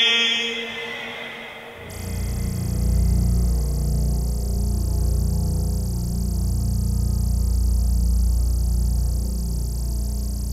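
A deep, steady low drone from the opening of a promotional video's soundtrack fades in about two seconds in and holds at an even level, like a cinematic bass rumble under the intro.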